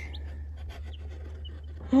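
Newly hatched chicks peeping faintly and sparsely inside a cardboard shipping box while the box lid is handled, with light cardboard clicks over a steady low hum. A woman's loud drawn-out 'Oh' begins right at the end.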